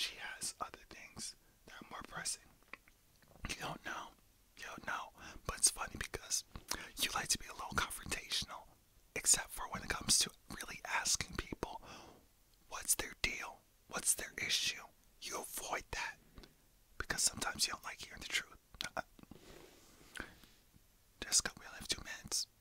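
A man whispering in short phrases broken by brief pauses; the words are not made out.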